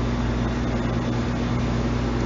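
Steady low hum with an even hiss, unchanging throughout: the constant background noise of the room and sound system between spoken phrases.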